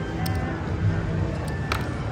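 Casino chips clicking twice as the dealer sets a payout down on the bet, over a steady casino background din.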